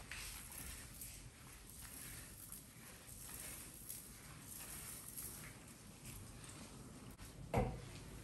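Wet mop swishing back and forth over a ceramic tile floor in soft, repeated strokes, with a single sharp knock near the end.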